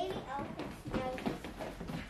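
Indistinct children's voices, several at once, with no clear words.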